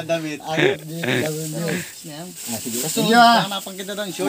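Men talking to each other, one voice going higher in pitch about three seconds in.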